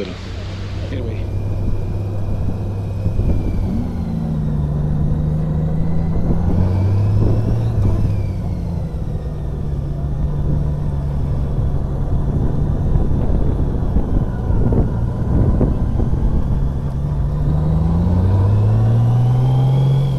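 Touring motorcycle's engine running under way, its note rising several times as it accelerates (most plainly near the end), over a steady rush of wind noise.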